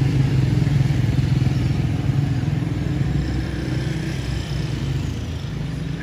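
Motor vehicle engine running close by, a steady low rumble that eases slightly about two-thirds of the way through.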